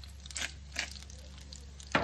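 Pepper grinder twisted over the pan: a few short crunches of peppercorns being cracked in the first second, then one sharp click at the very end.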